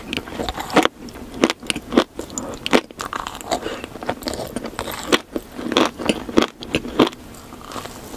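Close-miked chewing of a sprinkle-coated cake pop, with many irregular, sharp crunches.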